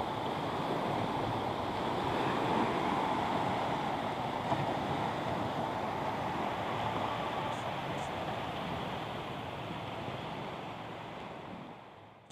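Small waves washing steadily onto a sandy beach, fading out near the end.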